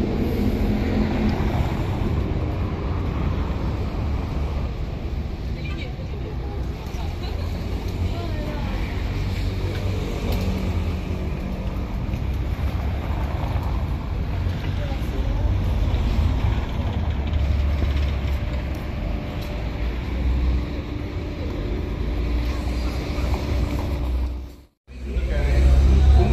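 Outdoor street ambience: a steady low rumble of traffic and wind on the microphone, with faint voices of passers-by.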